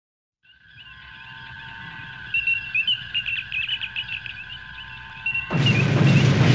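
Intro sound effects: steady high tones with warbling, bird-like chirping over them, then a sudden loud rushing burst about five and a half seconds in.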